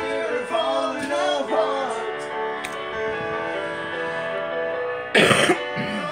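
A recorded song playing with a boy's voice singing along, the sung melody bending up and down through the first couple of seconds. About five seconds in comes a short, loud cough or throat-clear.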